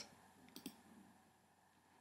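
Near silence broken by two faint computer mouse clicks in quick succession about half a second in.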